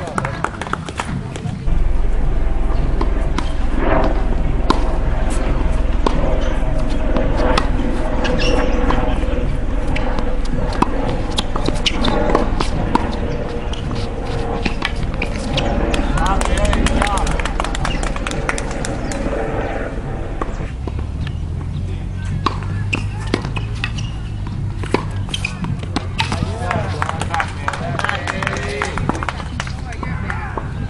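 Tennis balls struck by rackets and bouncing on a hard court, heard as a scatter of sharp pops, with voices in the background. A steady low rumble starts about two seconds in.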